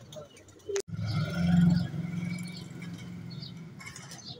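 Birds chirping over a loud, low, steady rumble. The rumble is loudest about a second and a half in and eases afterwards. The sound cuts out briefly just before a second in.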